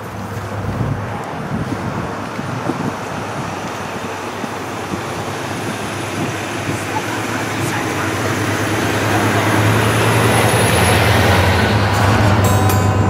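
Passing road traffic: a vehicle's low engine hum and road noise build steadily, loudest near the end.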